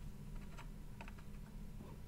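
Faint, irregular light clicks of metal tweezers and a soldering iron tip touching a small surface-mount resistor and the circuit board as the resistor is desoldered, over a steady low hum.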